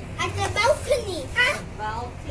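Young children's high-pitched voices, several short utterances in quick succession, words unclear.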